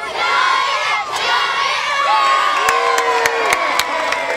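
Crowd of children and adults cheering and shouting, with scattered clapping joining in during the second half.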